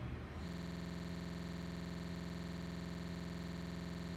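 Steady electrical buzz: a low hum with many evenly spaced overtones, starting about half a second in and holding at one level.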